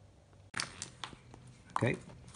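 Faint low hum, then from about half a second in a few short clicks and rustles of hands handling a paper sheet and small parts on a workbench.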